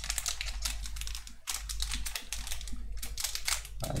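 Foil wrapper of a Pokémon booster pack crinkling and crackling as it is torn open by hand, in a dense, irregular run.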